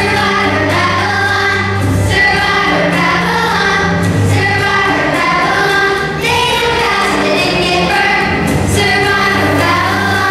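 Children's choir singing a song together over instrumental accompaniment, with held low notes underneath.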